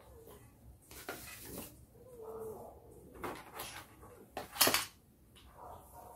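White board panels of a flat-pack shelf being handled and slotted together: scattered taps and knocks of the boards with rustling of the plastic sheet beneath them, the loudest a sharp clack about four and a half seconds in.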